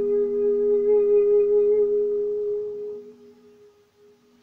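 The last note of a song, held steadily by a singer's voice over a ringing acoustic guitar chord. The voice stops about three seconds in and the guitar rings on faintly.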